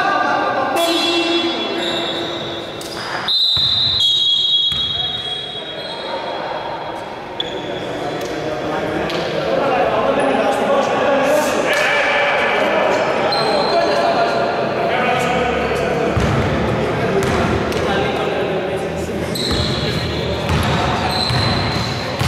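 Indoor basketball game: the ball bouncing on the hardwood court, several high-pitched squeaks, and players' voices, all echoing in a large gym.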